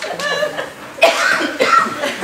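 Audience laughing, with a sudden sharp cough-like burst about a second in.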